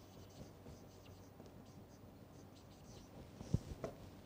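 Faint scratch and squeak of a felt-tip marker writing on a whiteboard, with a couple of short sharp taps near the end.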